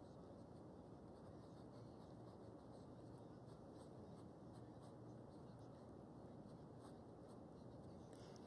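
Near silence: faint, irregular scratchy strokes of a paintbrush on canvas over a steady low hiss.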